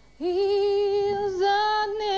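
A young woman singing solo and unaccompanied, holding long notes with vibrato; she comes back in after a short breath just after the start and steps up to a higher note about halfway through.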